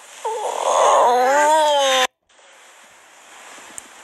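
A toddler's whimpering cry, its pitch wavering up and down, for about two seconds; then it cuts off abruptly, leaving faint room hiss.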